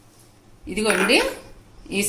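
A woman's voice saying a few words about a second in, after a short quiet pause, with speech starting again near the end.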